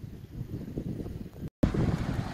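Wind buffeting the microphone, a low rumble. About one and a half seconds in, the sound drops out for an instant at an edit and comes back louder: wind with the rush of water pouring through a lake spillway.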